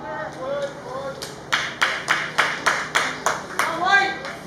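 One person clapping hands close by, about nine sharp claps at roughly three a second, after a second or so of shouted voices.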